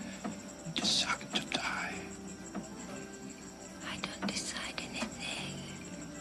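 Hushed, breathy whispering and breaths, strongest about a second in and again after four seconds, over soft sustained film music.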